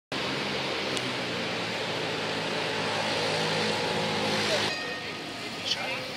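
Historic articulated city tram running close by, with a steady low hum from its equipment over street traffic noise. About three-quarters of the way in, the hum drops away and street noise continues, broken by a brief high squeak near the end.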